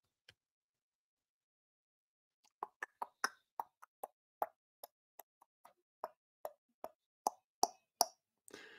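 A run of faint, short clicks or taps, about three or four a second and unevenly spaced, beginning a couple of seconds in after near silence.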